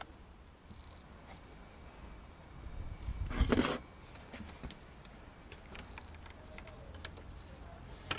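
Two short high-pitched electronic beeps about five seconds apart. Between them comes a loud half-second burst of noise, the loudest thing heard.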